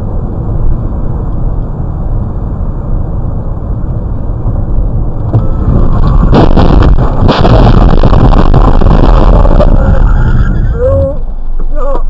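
Dashcam audio inside a car at expressway speed: steady road and engine noise, then about six seconds in the collision begins, with the car struck by another car cutting across from the left and then hitting the roadside concrete wall. It is heard as a cluster of impacts followed by several seconds of loud, distorted crash noise.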